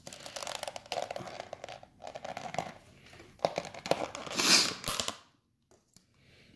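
Thin plastic deli-cup lid being pried off its container, crackling and creaking in short stretches, loudest about four and a half seconds in.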